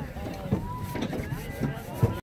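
Several distant voices talking and calling out, with wind rumbling on the microphone.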